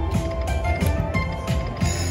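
Happy & Prosperous video slot machine playing its free-games bonus music with a steady low beat, over a run of rapid mechanical-sounding clicks as the reels spin into the next free game.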